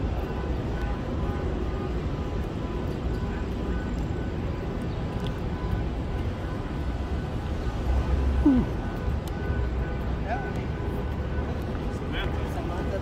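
Outdoor city street ambience: a steady low rumble of traffic, with faint background music and the voices of passers-by. One voice comes up briefly louder about eight seconds in.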